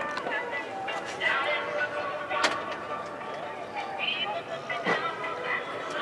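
Indistinct background voices with faint music underneath, and one sharp click about two and a half seconds in.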